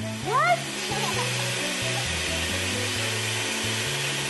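Background music over the steady whirring of an electric hand mixer beating buttercream frosting.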